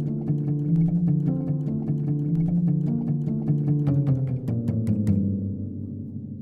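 A melody played on Spitfire's Triple Felt Experiment, a sampled felt piano: a run of low struck notes over held chords. The last notes are struck about five seconds in and left to ring out.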